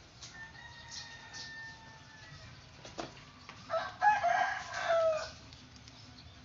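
A rooster crowing once, about four seconds in, one call lasting about a second and a half.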